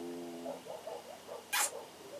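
A low, drawn-out vocal tone, like a chanted moan, slowly falls and fades about half a second in. Rough, broken throaty noises follow, then a short, sharp hiss of breath near the end.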